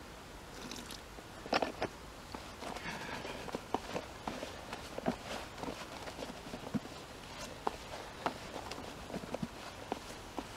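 Hands mixing damp groundbait in a plastic bucket: irregular crunching and rustling, with a louder cluster of crunches about one and a half seconds in.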